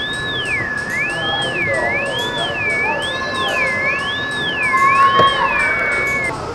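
A pure electronic tone warbling slowly up and down, about once a second, over a second steady high tone and a hiss. Near the end the warble flattens onto a held pitch.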